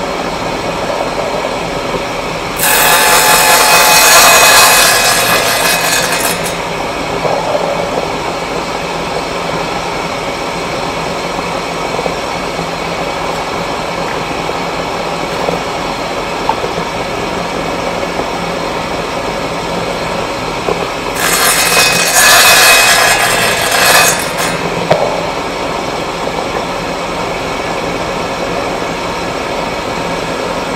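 Table saw running steadily, its blade cutting through eighth-inch plywood twice. Each cut lasts about three and a half seconds and is louder and higher than the running motor; the first comes a few seconds in, the second about two-thirds of the way through.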